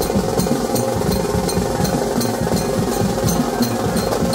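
Banjo party street band playing. Large marching drums beat a fast, busy rhythm, with a sharp tick about three times a second, over a held melody line.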